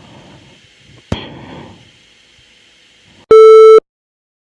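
Faint hissy recording with a single sharp click about a second in, then a very loud electronic beep lasting about half a second near the end that cuts off into dead silence.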